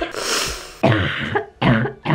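A woman coughing about three times into her hand, a cough from an illness she thinks is the flu or a sinus infection.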